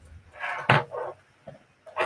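Handling noises as a crate is reached for and pulled over: a brushing rustle, one sharp knock, then softer scuffs and a small click.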